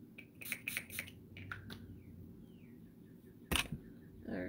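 Makeup products being handled on a table: a quick run of light clicks and taps, then one louder knock near the end.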